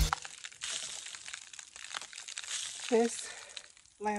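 Dry, dead leaves on a dug-up lamb's ear clump crinkling and rustling as it is handled with gloved hands.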